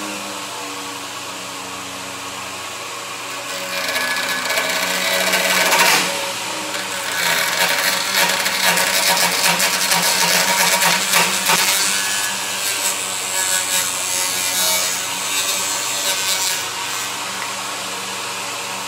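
48-volt three-phase brushless DC motor spinning a robotic trimmer arm's cutting head with a steady hum. From about four seconds in, the head chews through a one-inch-thick branch with a loud, rough scraping and rattling, cutting it easily.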